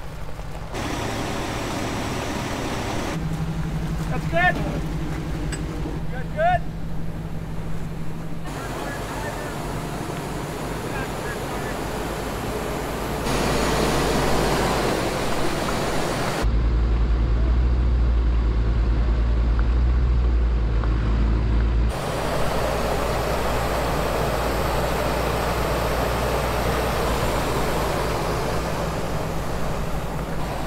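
Truck engines running while the trucks pull on a tow strap, the sound shifting abruptly at several cuts. There are two short rising chirps near the start. A heavier low rumble, with little high end, runs for about five seconds past the middle.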